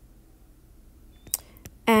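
Quiet room hum, then a single sharp click about a second and a half in. A woman's voice starts speaking just before the end.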